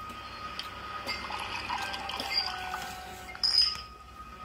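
Soft background music with held tones from a TV drama, under faint clinks of a plastic spoon and a metal fork against a plate of rice. A brief louder sound comes near the end.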